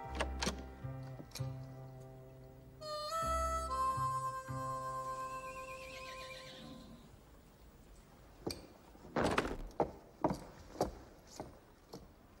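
Orchestral film score playing sustained notes over a low bass, with a horse whinnying about six seconds in. The music fades out, and the second half holds a series of irregular knocks and thuds.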